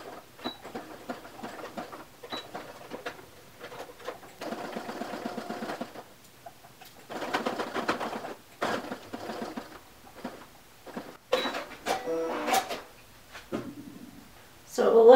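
Electric domestic sewing machine stitching a short seam across knit fabric, running in bursts of one to two seconds with pauses between them as the fabric is guided through. A few short high beeps sound along the way.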